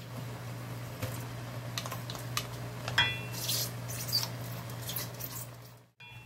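A wooden spatula stirring and scraping king oyster mushrooms braising in sauce in a large pan, with scattered scrapes and the sauce bubbling. There is a sharp, ringing clink about halfway through, all over a steady low hum.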